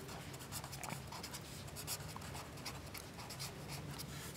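Pen writing on notebook paper: a faint, continuous scratching as a couple of words are written out by hand.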